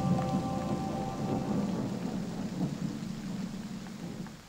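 The song's last notes ring out and die away in the first second or so, over a low, crackling noise that fades steadily away.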